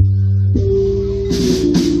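Live band playing with bass guitar, guitars and drum kit; a few sharp drum hits come in the second half.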